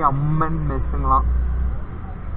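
A man talking over the steady low rumble of a two-wheeler being ridden along a city street, with engine and road noise. The voice stops just after a second in, leaving the rumble.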